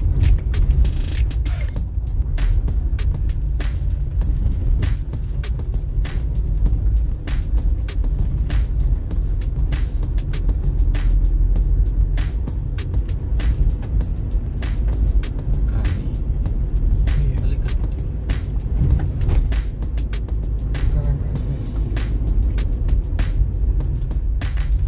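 A car driving slowly on a wet, narrow road, heard from inside the cabin: a steady low rumble with frequent irregular ticks and taps, under music.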